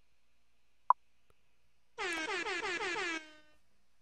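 A horn sound effect played from a streamer's soundboard: one blast of about a second, starting around two seconds in, with a pitch that wavers quickly. A brief sharp blip comes just before it, about a second in.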